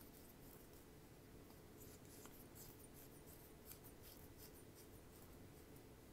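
Near silence: faint room tone with soft, scattered small ticks and rubbing as fingers handle and turn the parts of a stainless-steel atomiser.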